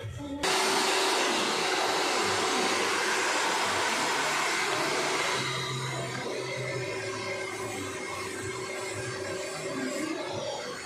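Handheld hair dryer blowing air through hair onto a round brush: a steady rush of air with a steady whine under it. It starts abruptly about half a second in and turns softer and duller about halfway through.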